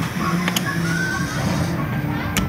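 Air hockey table's blower fan running steadily, with one sharp click about half a second in, amid arcade noise.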